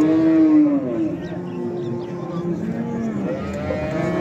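Cattle mooing: several long, drawn-out moos follow and overlap one another, each rising and falling in pitch.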